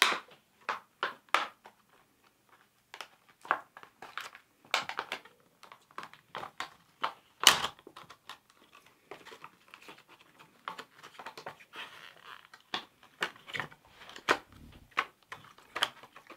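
Small plastic packet of silver flakes crinkling in the hands in irregular crackles as it is squeezed and shaken to tip the flakes out, with one sharper crackle about halfway through.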